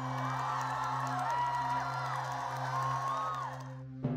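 A steady low musical drone with a crowd cheering and whooping over it, voices rising and falling in pitch; it all fades away just before the end.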